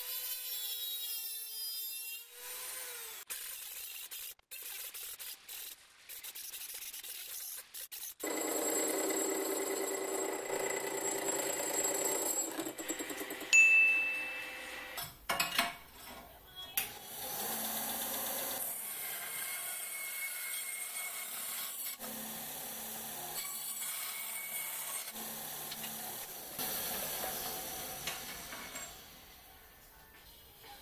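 A benchtop band saw running and cutting aluminium tube stock, starting about eight seconds in and going on in stretches until near the end. Before that, a handheld power tool works on the valve cover, and its pitch winds down in the first few seconds.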